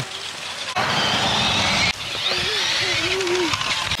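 Young children's voices calling out and shouting while they ride, with a rush of rumbling noise from a little under a second in that lasts about a second, then one child's wavering voice.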